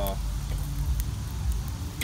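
Sausages sizzling faintly on a charcoal kettle grill, with a few light clicks around the middle, over a steady low rumble.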